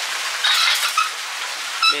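Water falling and splashing into a koi pond: a steady hiss, with a louder stretch of splashing about half a second in and a short high chirp near the end.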